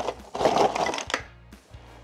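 Frozen pierogi sliding out of a cardboard box and tumbling into a slow cooker pot for about a second, ending in a sharp knock.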